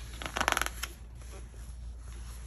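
Paper pages of a softcover book rustling as they are handled and turned. A brief flurry of crackles comes about half a second in.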